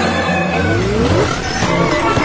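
Background music with a sound effect that rises in pitch over about a second near the start, typical of a transition sweep in a video edit.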